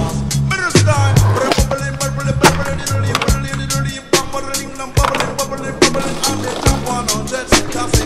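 Music with a drum beat and a bass line, with skateboard sounds over it: wheels rolling on concrete and the board snapping and landing in sharp clacks.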